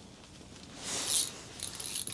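Quiet handling sounds from a rod and reel held in gloved hands: a soft rustle about a second in, then a few light clicks near the end.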